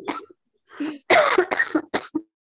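A person coughing over a video call: a short cough at the start, then a louder run of several coughs about a second in.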